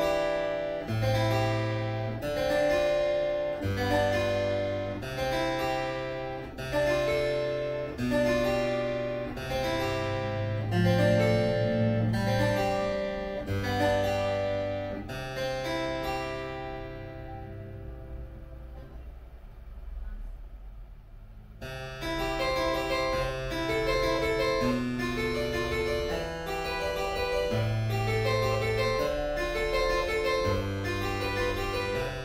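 Harpsichord tuned to A440 playing a figured-bass exercise on seventh chords: a bass note with a chord above it, struck about every second and a half. Around fifteen seconds in, a final chord is left to ring and dies away, and the playing starts again about six seconds later with quicker chords.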